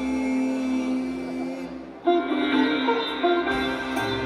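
Sitar playing a slow, unaccompanied raga-style phrase over a steady drone: a held note dies away, and about two seconds in a sharp new plucked stroke opens a fresh line of bending notes.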